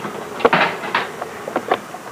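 Handling noise: a sharp knock about half a second in, then a short scrape and a few scattered clicks from the kitplane's tube frame and tie-down strap being worked.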